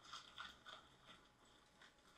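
Near silence: room tone with a few faint, soft clicks in the first second.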